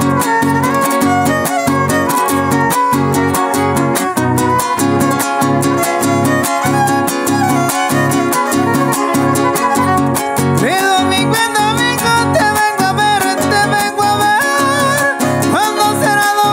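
Huasteco trio playing a son huasteco: violin melody with slides over a steady strummed rhythm from the jarana and huapanguera.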